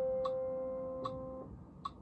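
The final chord of a piano piece, held and fading steadily, then released about one and a half seconds in. A metronome ticks evenly throughout, a bit more than once a second.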